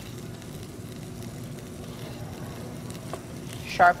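Faint, steady sizzle of garlic frying in butter in a pan, with a light tap of a knife on a wooden cutting board about three seconds in.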